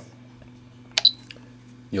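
Power switch of a Spektrum DX7 radio transmitter flicked on: a single sharp click about a second in, with a short high ring right after it.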